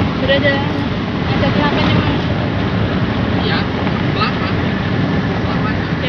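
Steady road and wind noise of a car cruising on a highway, heard from inside the car, with faint voices in the background.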